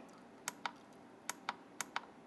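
Perfect Prime IR0280 thermal camera's down-arrow navigation button pressed repeatedly, giving about six sharp plastic clicks at uneven intervals as the image gallery scrolls.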